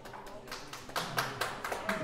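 Audience clapping, sparse at first and filling in about a second in, with voices mixed in.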